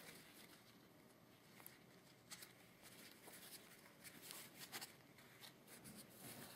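Near silence, with faint scattered rustles and small ticks from hands twisting a craft wire and handling ribbon and fabric.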